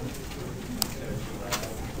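Classroom noise as a lecture breaks up: a faint low murmur with two sharp clicks, the first a little under a second in and the second about a second and a half in.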